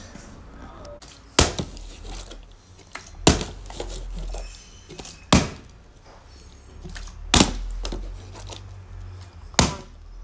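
Partly filled plastic water bottle thudding onto a wooden floor as it is flipped, five sharp hits about two seconds apart.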